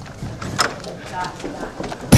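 A few light knocks and handling noises with faint, indistinct voices.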